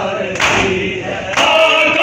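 A chorus of men chanting a noha (Urdu mourning lament) in unison, with sharp, regular matam strikes of hands on bare chests about once a second beneath the singing.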